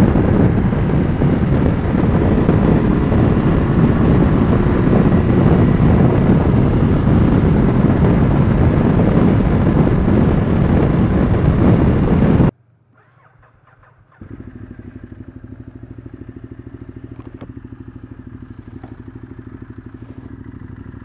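Heavy wind and rain noise on a helmet microphone with no windscreen at highway speed, with the Ducati Multistrada 1200's L-twin engine under it. About twelve seconds in it cuts off abruptly, and after a moment of near silence the same motorcycle engine runs quietly at low speed with an even pulse.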